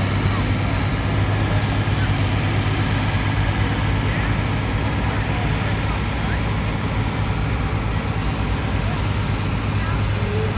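Ford 6600 farm tractor's three-cylinder diesel engine running hard under load while dragging a weight-transfer pulling sled. It is a loud, steady drone that holds an even pitch.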